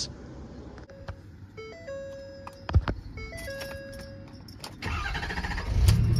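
A short run of electronic tones stepping up and down in pitch, with a single sharp click partway through. About five seconds in, the Ford Super Duty's Power Stroke diesel starts and settles into a steady low idle.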